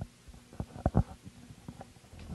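Handling noise on a handheld microphone: a cluster of soft, low thumps and rubs about half a second to a second in, then a few fainter knocks.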